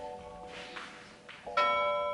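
A bell-chime sound effect. A soft chime rings at the start and fades away, then a louder chime strikes about one and a half seconds in and keeps ringing.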